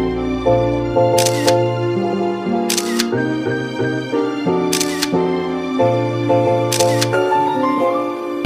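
Melodic background music, crossed by four phone camera-shutter clicks about two seconds apart.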